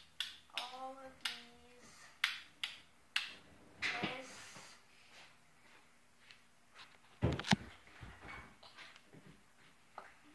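Sharp clicks and taps from a small handheld object being handled, with a brief bit of voice about a second in and a heavier thump about seven seconds in.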